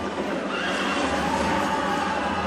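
Horses whinnying over the din of a cavalry charge, from a film's soundtrack played through a lecture hall's speakers: one rising whinny about half a second in, then a held high cry.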